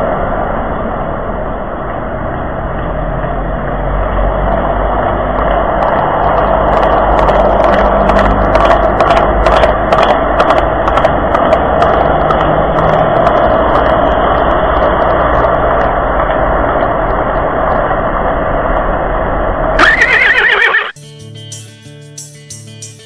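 A horse's hooves clip-clopping over a steady noisy background, with a whinny near the end. Music cuts in just before the end.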